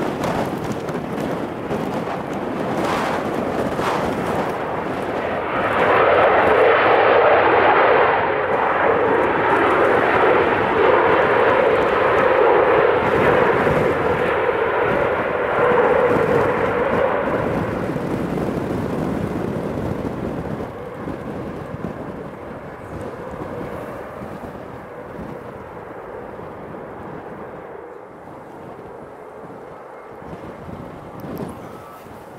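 Four-engine Airbus A340 jet landing: its engines rise into a loud roar of reverse thrust a few seconds after touchdown. The roar holds for about twelve seconds, then fades steadily as the jet slows on the runway.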